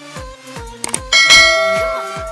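Bell-like notification ding from a subscribe-button animation, struck once about a second in and ringing out as it fades, preceded by a couple of quick clicks. An electronic dance beat runs underneath.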